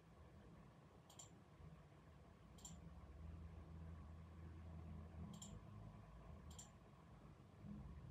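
Near silence: a faint low rumble of distant road traffic, broken by four short, sharp high clicks at uneven intervals.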